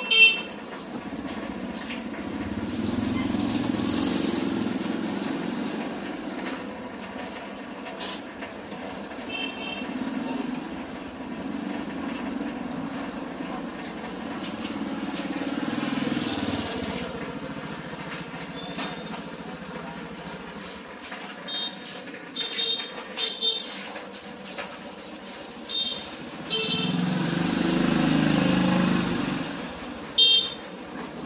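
Motorbikes passing close by in a busy market street, their engines swelling and fading several times. Short horn toots sound about ten seconds in, and a run of quick toots comes near the end.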